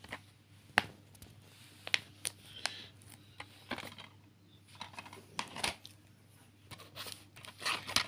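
Plastic DVD cases being handled: scattered sharp clicks and short rustles, a few to a second, as cases are closed, set down and picked up.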